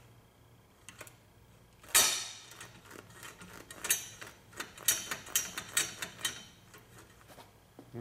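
Metal clicks and knocks of a VW Beetle gear shift lever and shift rod being worked through the gears in a bench mock-up, the rod moving in a new Delrin bushing. One loud knock with a short ring comes about two seconds in, followed by a run of lighter clicks.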